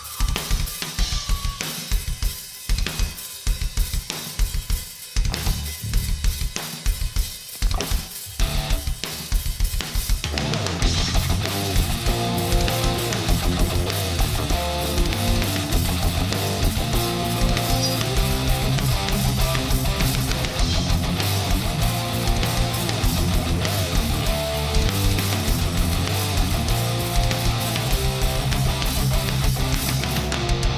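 Live hard rock band. For about the first ten seconds the drum kit plays in separate hits: kick, snare and cymbals. Then electric guitars and bass come in and the full band plays on steadily.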